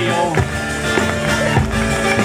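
Live folk dance music with a steady beat and held bass notes, played for dancers.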